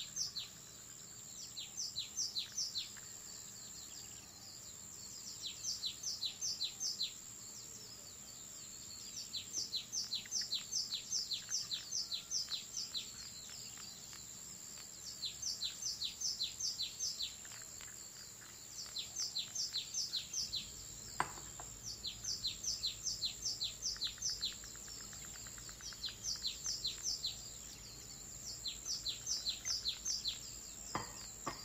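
A songbird singing the same phrase over and over: a quick run of five to eight descending high notes, repeated every few seconds.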